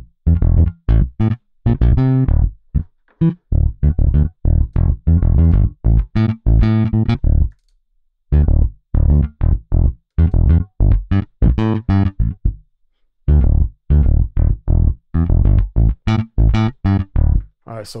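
Sampled electric bass from the Scarbee Pre-Bass library in its 'Amped - Deep' preset, playing on its own. It runs a riff of short plucked notes with a slightly driven, amped tone and brief breaks about 8 and 13 seconds in.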